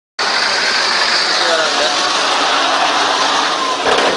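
Heavy tanker lorry running close by as it turns, a steady loud noise, with voices mixed in.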